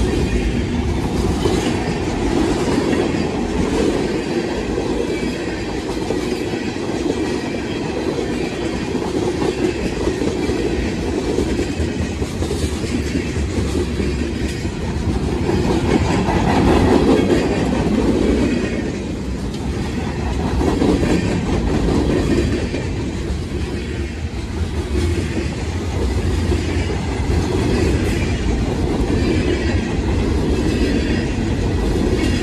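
Freight cars of a CSX mixed freight train rolling past close by: a loud, steady rolling rumble with wheel clicks and rattling from hoppers, boxcars and tank cars. The sound swells and eases a little as the cars go by.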